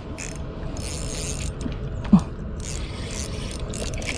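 Fishing reel's mechanism ticking and whirring in repeated spells as line is wound in against a hooked fish.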